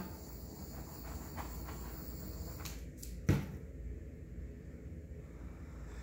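Small handheld butane torch hissing steadily as its flame is played over wet acrylic paint to pop air bubbles, stopping about three and a half seconds in. A single sharp knock comes just before the hiss ends.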